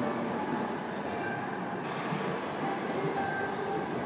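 Steady background noise of a large gym hall: a constant, even rumble with no distinct events.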